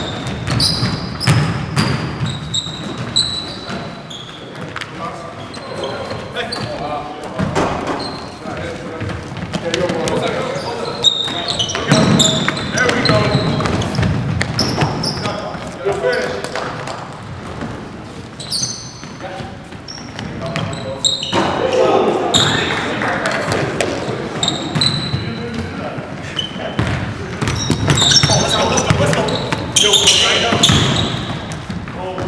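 Live pickup-style basketball game in a large echoing gym: a basketball bouncing on the hardwood, sneakers squeaking in short high chirps, and players shouting indistinctly to each other.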